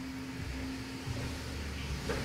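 Steady low rumble and even hiss with a faint steady hum underneath.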